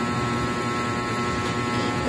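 A steady electrical hum with a buzzing edge, running unchanged with no distinct strokes or knocks.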